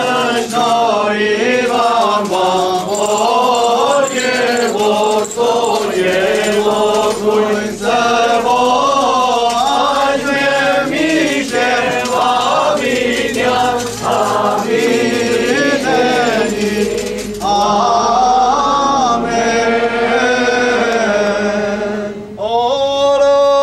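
Armenian liturgical chant sung during the Blessing of Water: voices carry a continuous melodic line whose pitch bends up and down.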